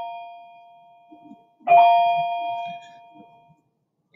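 A bell-like chime, already fading, is struck again with the same notes a little under halfway through, and rings out slowly. Faint soft rubbing noises sit between the rings.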